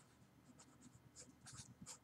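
Faint felt-tip marker writing on paper: several short scratchy strokes as a word is written out.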